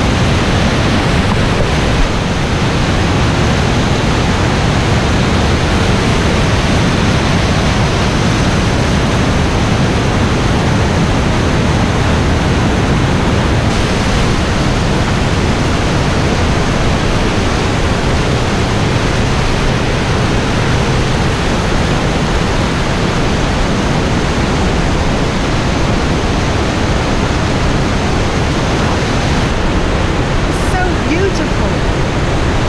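Rushing whitewater of a mountain waterfall and cascading creek, heard up close as a loud, steady, unbroken rush; the creek is running high with melting snow.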